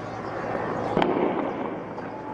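A single shotgun shot about a second in: one sharp bang with a short echo trailing after it, over steady background street noise.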